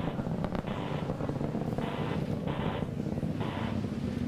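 Steady low rumble of an Atlas V rocket in powered ascent through maximum dynamic pressure, with short bursts of radio hiss from an open launch-control channel coming and going about five times.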